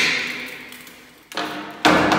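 Sharp wooden knocks echoing in a bare room as a wooden pole braced across glass-paned doors is knocked loose and pulled away. One knock fades out at the start, then two more come about a second and a half in, the last the loudest.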